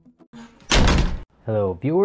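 A sudden loud burst of noise lasting about half a second, followed by a man's voice calling out briefly twice.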